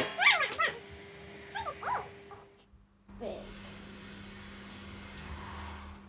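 Short high-pitched wordless whines, their pitch rising and falling, in two brief clusters in the first two seconds, over a faint steady hum.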